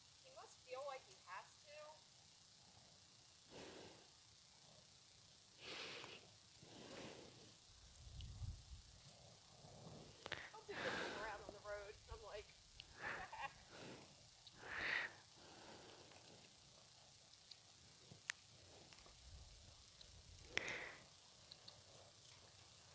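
Near silence, with faint, distant voices now and then and a few soft breathy noises.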